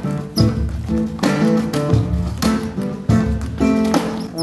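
Guitar strummed in rhythmic chords, each stroke sharply attacked, in an uneven pattern of about one to two strums a second.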